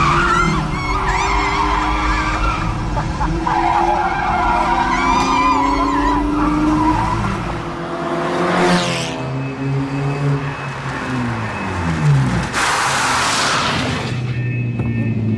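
A Volkswagen Polo race car driven hard on a circuit: the engine revs up and down and the tyres squeal and skid through the corners, while a woman passenger cries out in the first seconds. About two-thirds in, the engine note falls as the car sweeps past. Near the end comes a loud rush of tyre skid.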